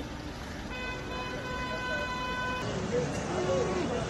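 A vehicle horn sounds one steady held note for about two seconds over a steady outdoor background, then stops abruptly; brief voices follow.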